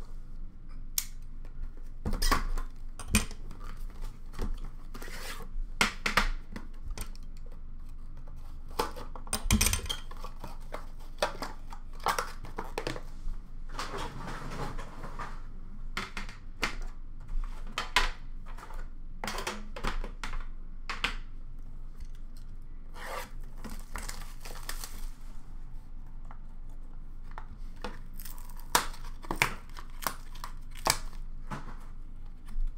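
Plastic shrink wrap being cut and torn off trading-card boxes, with crinkling and irregular sharp clicks and knocks as the boxes and the card tins inside them are handled. About halfway through there is a longer stretch of tearing and crinkling.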